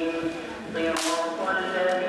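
A person's voice in long, held pitched tones, like a recitation rather than ordinary talk, with a sharp hiss about a second in.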